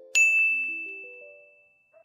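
A single bright chime ding struck just after the start, ringing out and fading over about a second and a half, over soft background music of quiet stepping notes.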